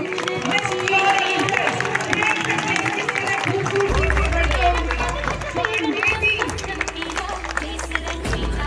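Voices and music mixed together over a stadium crowd, as from a public-address system. A low rumble joins about halfway through.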